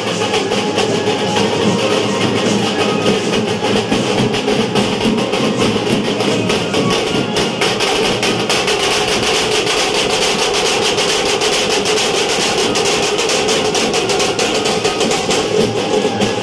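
Loud procession band music: many hand-beaten frame drums (daf) playing a dense, fast, continuous beat under a melody from a cart-mounted band over loudspeakers.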